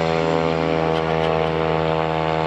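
Single-engine propeller plane's engine running at a steady, unchanging pitch.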